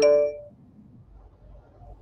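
A phone's electronic ring chime: two quick bright tones, sudden and loud, fading out within half a second.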